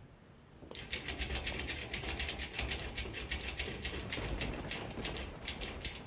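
Rapid, uneven mechanical clicking, several clicks a second like a ratchet, over a low rumble; it starts under a second in and keeps going.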